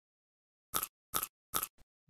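Three short, crisp clicks about 0.4 s apart, starting just under a second in, with a faint fourth tick after them: an editing sound effect on the animation.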